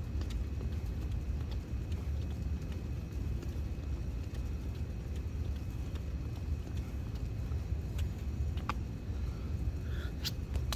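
Steady low outdoor rumble, with a few faint clicks near the end.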